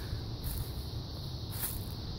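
A steady high-pitched insect chorus, the continuous trilling of crickets, with a faint uneven low rumble underneath.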